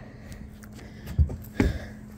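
Two dull thumps of footsteps on a fiberglass boat deck as someone climbs aboard, over faint rustling handling noise.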